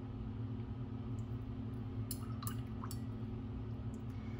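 Faint handling sounds of watercolor painting over a steady low room hum, with a few soft clicks about two to three seconds in.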